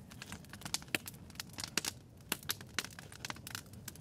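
Fire burning inside a ceramic kiln during its firing, crackling with many irregular sharp pops.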